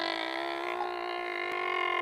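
A single sustained electronic tone with many overtones, held steady at one pitch after a slight settling at the start: a sound effect laid into the comedy skit.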